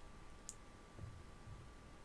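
Quiet room hiss with one sharp click about half a second in, followed by two soft low bumps.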